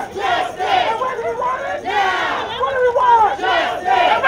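A crowd of protesters shouting chants, many raised voices together in loud bursts.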